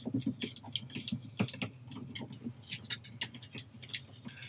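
Coax cables and their connectors being handled: irregular light clicks and rustling as the cables are moved and a coax tester is connected to a port.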